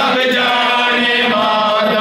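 A male voice chanting a noha, a Shia lament, in long held notes.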